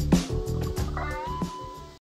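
Background music with a steady beat, fading out near the end. About halfway through, a high gliding tone with overtones comes in over it, rising and then holding.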